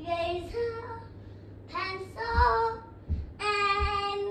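A young child singing a wordless tune in short high-pitched phrases, the last note held for about a second near the end, with a few faint low thumps underneath.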